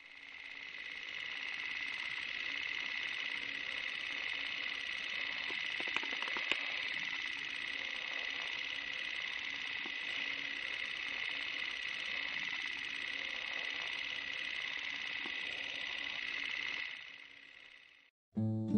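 A steady, high-pitched hissing noise that fades in over the first couple of seconds and fades out near the end, with a faint low hum beneath it.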